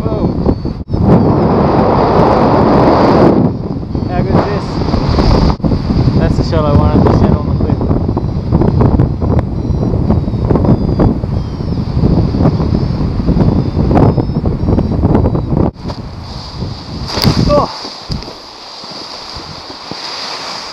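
Loud wind rushing and buffeting over the camera microphone of a paraglider in flight, cut off abruptly a few times, then dropping to a much quieter hush near the end.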